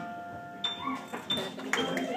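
Acoustic guitar's final note ringing out and fading over about a second as the song ends. Then scattered claps, voices and a few whistles start up from the audience.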